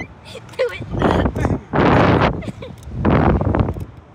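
Riders on a Slingshot reverse-bungee ride laughing while wind rushes over the onboard camera's microphone, in three loud gusts about a second apart as the capsule bounces.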